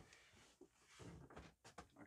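Near silence: room tone with a few faint, short clicks and taps.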